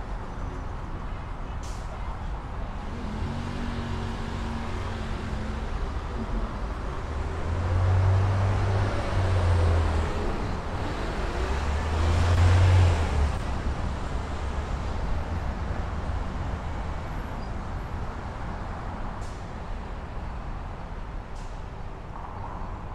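City street traffic: a steady low rumble of vehicles on the road, swelling twice around the middle as vehicles pass close by.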